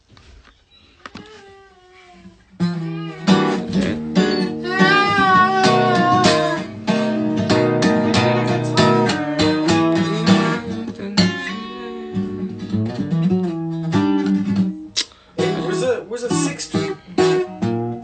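Acoustic guitar being picked and strummed, chords ringing out, starting about two and a half seconds in after a near-quiet start.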